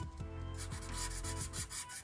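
Felt-tip marker rubbing on paper in a run of short, soft strokes as it lays down a dark shadow line.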